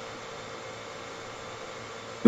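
Steady, even background hiss of a video-call audio line, with a faint steady hum under it.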